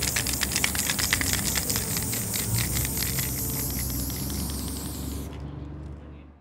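A steady hiss full of fine rapid crackle, with a low hum beneath. The hiss cuts off about five seconds in, and the hum fades soon after.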